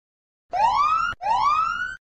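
Time's-up alarm sound effect marking the end of a countdown timer: two loud electronic whoops back to back, each sliding steadily upward in pitch for under a second.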